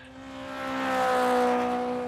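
A racing car's engine passing by: one steady engine note that swells to a peak about a second in and then fades, its pitch falling slightly.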